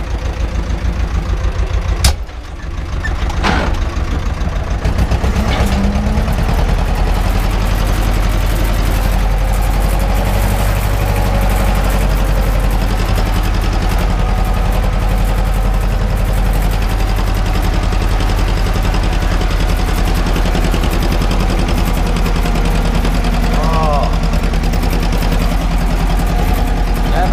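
Farm tractor's diesel engine, heard from inside the cab, running with a regular pulse at first. There is a sharp click about two seconds in, then the engine speeds up and runs steadily under load, pulling a cultivator through tilled soil.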